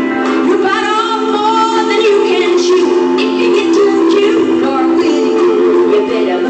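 A live country band playing, with a woman singing lead.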